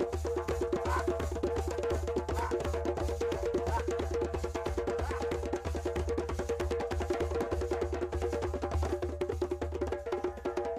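Djembes played with the hands in a fast, dense rhythm, many strokes a second, over steady held pitched tones.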